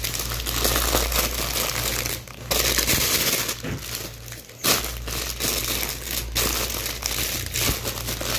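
Thin plastic carrier bag and clear plastic clothing packaging crinkling and rustling as they are handled, in irregular spells with two brief lulls, about two and four and a half seconds in.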